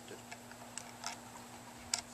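A few faint, sharp clicks from wire leads and connectors being handled at a small solar charge controller, the loudest one near the end.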